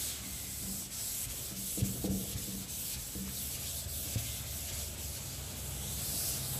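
Chalkboard duster rubbing across a chalkboard, wiping off chalk writing, with a few light knocks about two and four seconds in.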